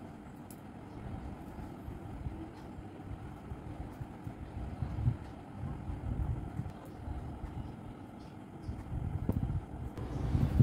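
Soft cloth rustling as clothes are folded by hand, over a steady low rumble of room noise. Near the end the phone is handled.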